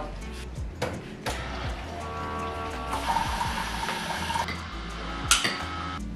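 Background music with a steady bass under a coffee maker at work: a few clicks, then a hissing hum about three seconds in that lasts over a second, and a sharp clink near the end.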